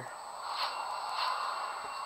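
A movie soundtrack playing through an iPhone 3G's small built-in speaker: a steady whooshing noise with no clear music or speech in it.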